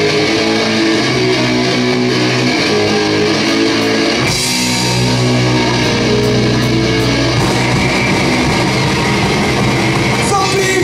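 Live rock band starting a song: an electric guitar riff plays with little low end, then about four seconds in bass and drums come in with a cymbal crash and the full band plays on loud.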